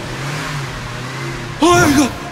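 A car engine running with a steady low hum. Near the end a man gives a short, loud shout.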